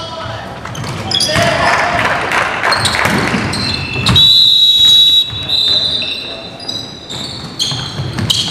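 Basketball game sounds in a gym: players' voices and a ball bouncing on the hardwood floor. About halfway through, a steady, high, shrill tone sounds for about a second.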